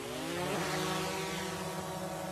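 Quadcopter camera drone taking off: its propellers spin up with a rising whine, then settle into a steady buzzing hover.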